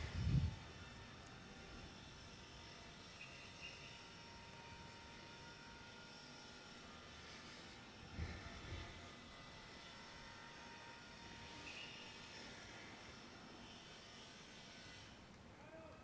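Faint, steady outdoor background during a silent ceremony, broken by a soft low thump just after the start and another about eight seconds in.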